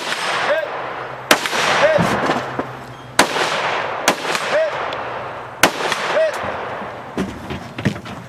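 Scoped rifle fired about five times at spaced intervals, each shot echoing. After most shots a short metallic ping follows about half a second later, the ring of a steel target being hit downrange. Two lighter cracks come near the end.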